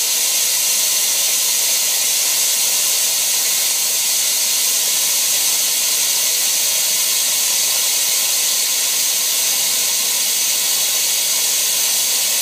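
Steady hiss of water spraying out of the Schrader air valve of an Amtrol WX-250 well pressure tank. Water coming out of the air valve is the sign that the tank's bladder has failed.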